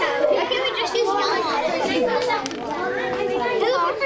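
Many children talking at once: overlapping classroom chatter, with no single voice standing out.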